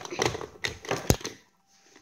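Clatter of toy dinosaur figures being handled: a quick run of clicks and knocks, with one sharp knock about a second in.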